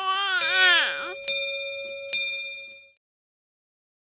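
A bell-like chime struck three times, each strike ringing on and fading. Under the first strike, a high, wavering, voice-like cry swoops down in pitch about a second in.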